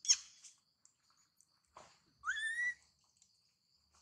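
Baby long-tailed macaque crying: a short, sharp falling squeak right at the start, then one high squealing call that rises in pitch and holds for about half a second, a little past halfway. A faint, steady, high insect drone runs underneath.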